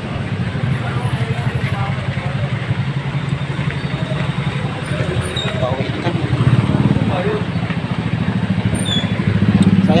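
Street traffic dominated by a motor vehicle engine running close by, a low steady drone that swells briefly twice, with faint voices of people around.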